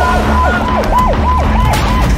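Emergency vehicle siren in a fast yelp, sweeping up and down in pitch about four or five times a second.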